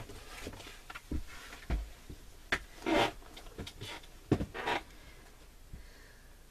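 Small craft tools and supplies being handled while someone looks for a pin: a scattering of soft knocks and clicks with two short rustles, the louder one about halfway through.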